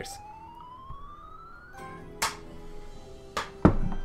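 Online slot machine's win count-up tone, climbing steadily in pitch for nearly two seconds as the win is transferred to the balance, then a short held game jingle for the extra free spins, broken by three sharp knocks.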